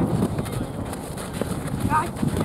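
Soccer players calling out across a dirt pitch over the patter of running feet on hard ground, with a short rising shout near the end.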